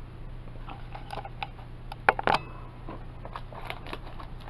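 Hands handling a plastic DVD case: scattered light clicks and taps, the loudest about two seconds in, over a steady low hum.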